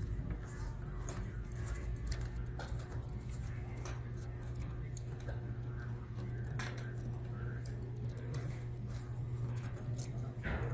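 Faint, scattered clicks and scrapes of a small screwdriver backing out tiny screws and lifting the thin metal M.2 shield from a Dell Inspiron 3583 laptop, over a steady low hum.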